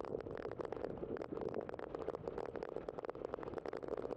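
Bicycle tyres rolling over a packed dirt and gravel path, a steady crunching crackle of many small ticks and grit.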